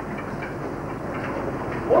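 Steady background noise of a classroom, with a faint murmur of pupils' voices.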